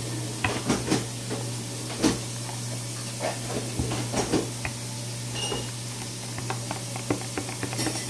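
Metal spoon stirring and scraping in a small plastic cup of glue-based slime as it begins to thicken, giving irregular clicks and taps. A steady low hum runs underneath.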